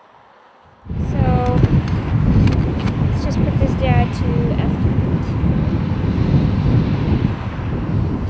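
Wind buffeting the microphone, a loud low rumble that starts suddenly about a second in, with a couple of brief snatches of a woman's voice and a few faint clicks.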